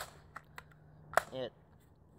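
Sharp handling clicks: a loud click at the start, two faint ticks, and another loud click just over a second in.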